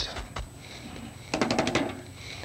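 Two-inch paint brush tapped lightly against the canvas: a couple of separate taps early, then a quick run of about half a dozen taps a little after halfway.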